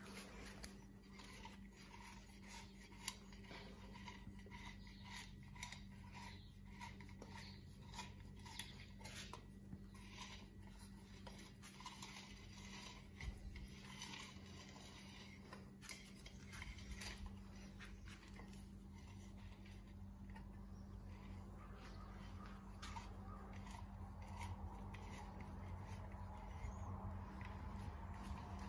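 Faint clicks and light scraping of a lawnmower recoil starter being handled and its pulley turned by hand, plastic parts knocking together, over a steady low hum.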